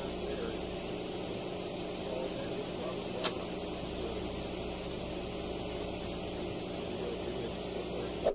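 Steady low hum and rumble, with one sharp click about three seconds in.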